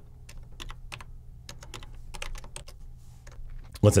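Typing on a computer keyboard: a quick, irregular run of key clicks as a line of code is entered.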